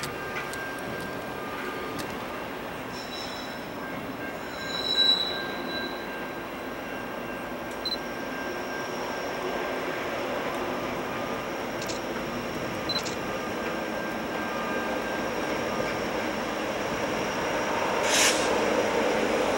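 A Norfolk Southern freight train led by an EMD SD70ACe approaches from a distance, growing gradually louder, with steady high-pitched wheel squeal. A brief, louder high squeal comes about five seconds in.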